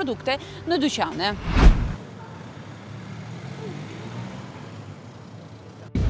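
A woman's voice ends a sentence, then a sudden loud thump with a deep low end, followed by about four seconds of steady low background rumble.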